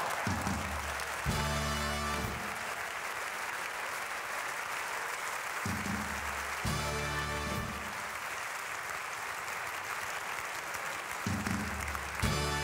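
Hall audience laughing and applauding, while the carnival band plays a short two-part fanfare three times, about every five to six seconds.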